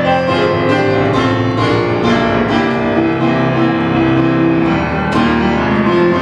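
Solo piano playing a medley that sets rock guitar songs to TV themes, with held chords under a moving melody and a hard-struck chord about five seconds in.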